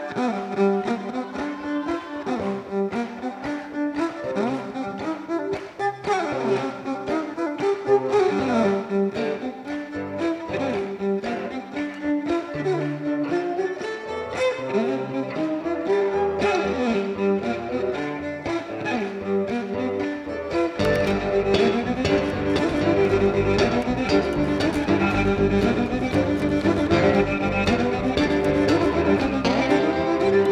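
Solo violin played with a bow in a bluesy fiddle tune, its notes often sliding up and down in pitch. About two-thirds of the way through, lower instruments join underneath and the music grows fuller and louder.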